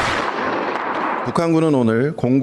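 A heavy military gun firing a single shot: a sudden blast whose noise dies away over about a second and a half.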